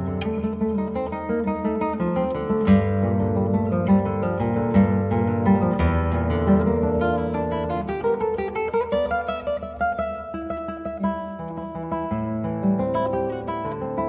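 Solo nylon-string classical guitar played fingerstyle: a steady stream of quick plucked notes over changing bass notes.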